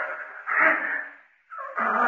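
A cat yowling in repeated drawn-out cries as it attacks.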